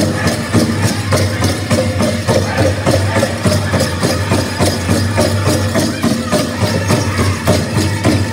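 Live powwow music for men's traditional dancing: a big drum struck in a steady, even beat with singers, and the dancers' bells jingling throughout.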